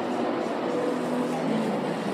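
Shopping-mall concourse ambience: a steady wash of indistinct crowd noise and background hum, with faint snatches of distant voices.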